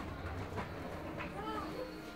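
Indistinct background voices of other shoppers in a store, over a steady low hum.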